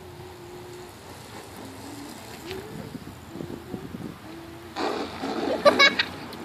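A person's voice holding a steady low hum that stops about a second in, followed by a few short hummed fragments, then laughter breaking out near the end.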